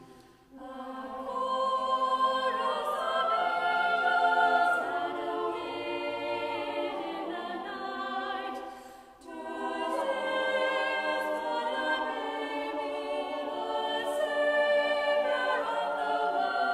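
Choir singing a verse of a Christmas carol in two phrases, with a short breath pause about nine seconds in.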